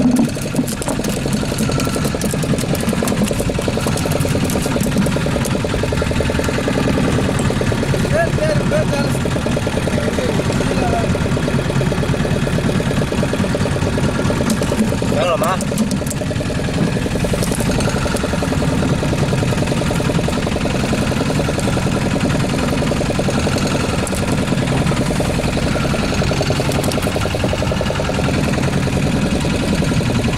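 A fishing boat's engine running steadily, a constant drone, with brief voices now and then.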